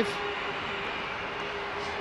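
Stadium crowd ambience at a Gaelic games ground, an even, steady murmur, with a thin steady hum held through it.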